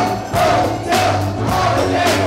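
Live band music with a regular drum beat and a steady bass line, with voices singing over it.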